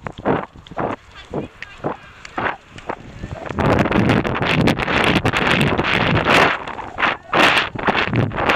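Pony's hooves striking the soft arena surface in a steady beat of about two to three a second, picked up by a helmet-mounted action camera. From about three and a half seconds in, heavy wind noise on the camera's microphone covers them for several seconds.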